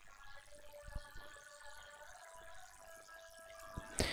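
A few soft computer keyboard and mouse clicks over quiet room noise with a faint steady hum.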